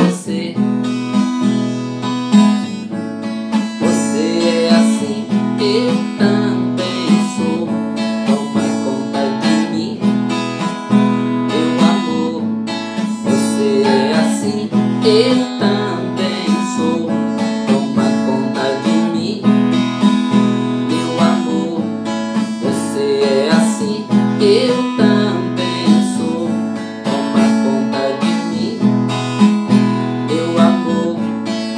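Acoustic guitar (a Condor cutaway) strummed in a steady rhythm through a run of changing chords, playing an instrumental passage of the song.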